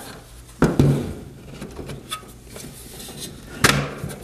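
Hard plastic sections of a TJ4200 ceiling air inlet being handled and fitted together: a sharp clack about half a second in, then quieter rubbing, then a louder clack near the end as the corners are snapped together.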